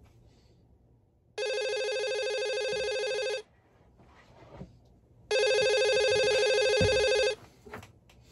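A mobile phone ringing twice with a classic telephone-style ringtone, each ring about two seconds long with a gap of about two seconds; the second ring is louder.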